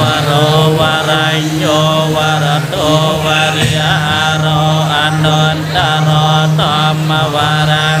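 Buddhist monks chanting Pali verses together, held on a steady low reciting tone with the melody of the voices rising and falling above it.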